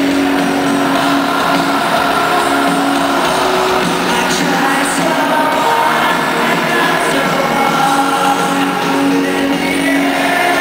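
Live rock band playing through a loud arena PA, heard from the audience: a male lead voice sings long held notes over guitars and drums, with a large-hall echo.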